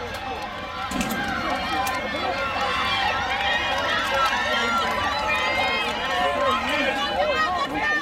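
Spectators yelling and cheering the sprinters on, many voices overlapping, growing louder about a second in.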